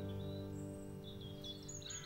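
The band's last acoustic chord ringing out and fading away, with small birds chirping faintly outdoors, a few short high calls from about half a second in and more near the end.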